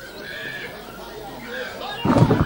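High-pitched, wavering human voices crying out amid a crowd.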